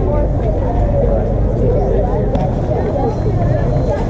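Indistinct overlapping voices of softball players and spectators chattering and calling across the field, over a steady low rumble.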